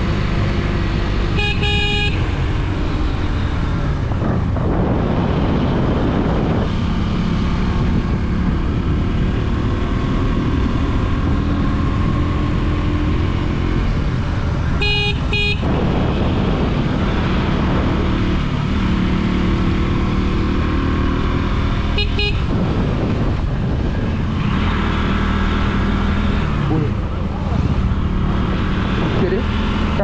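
Motorcycle engine running steadily under wind noise while riding, with a vehicle horn sounding three short times: near the start, about halfway, and briefly about three-quarters of the way through.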